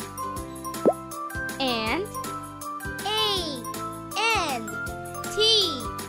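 Children's background music running steadily under a high, childlike voice that gives four drawn-out calls, each rising and falling in pitch. A quick rising plop effect sounds about a second in.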